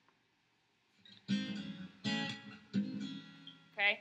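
Acoustic guitar fingerpicking an F sharp minor 7 chord, slid up from the first fret into the second-fret shape. Three plucked chords start about a second in, each left to ring and fade.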